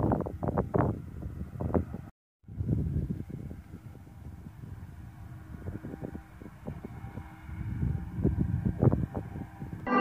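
Wind buffeting the microphone: an uneven low rumble coming in irregular gusts, cutting out briefly about two seconds in.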